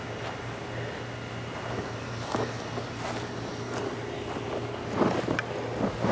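Overcharged lithium-polymer battery venting and burning inside a sand-filled PVC containment tube: a steady hiss over a low hum, with a few faint crackles. About five seconds in comes a louder pop, taken for another cell bursting.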